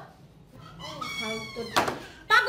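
A short, soft, high-pitched vocal sound in the middle, then a single sharp knock near the end.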